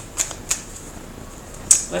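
A deck of tarot cards handled and shuffled in the hands, giving three sharp clicks of the cards, two close together about a second apart from the third.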